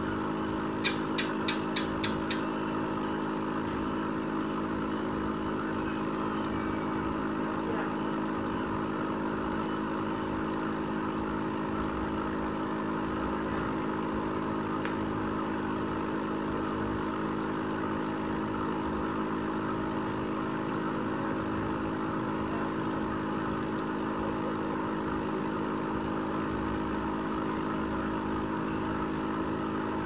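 Steady mechanical hum of an aquarium pump or filter, with a rapid high-pitched pulsing that drops out and returns several times. A quick run of about six clicks comes about a second in.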